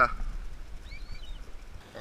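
Low, steady wash of seawater against breakwall rocks, with a faint high bird chirp about a second in.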